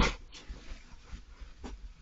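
Badger cub moving about in the straw-bedded chamber of an artificial sett: a sudden loud scuffle at the start, then fainter scuffing.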